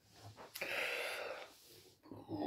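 A man's short, noisy breath out, about a second long and starting about half a second in, as a reaction to a sip of cider he dislikes.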